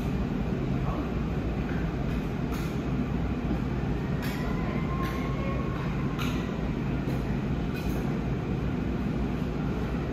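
Metal spatulas scraping and tapping on the frozen steel plate of a rolled ice cream machine, with several sharp scrapes and a faint squeal about midway, over a steady low hum.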